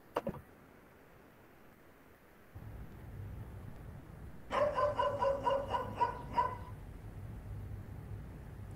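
Playback of a synthetic sound-event dataset recording. A low hum comes in about two and a half seconds in, then about two seconds of rapid, stuttering, pitched sound: a harsh noise like an old video game, which the dataset labels as footsteps.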